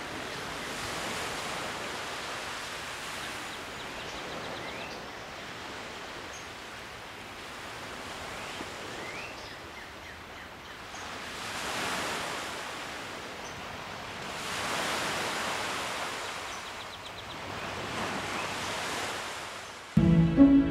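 Small lake waves washing onto a flat shoreline, a steady rush that swells and fades every few seconds, with a few faint short chirps above it.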